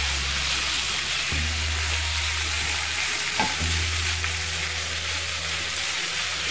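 Sliced sausage, bell peppers and onions frying in a nonstick skillet while a spatula stirs them: a steady sizzling hiss.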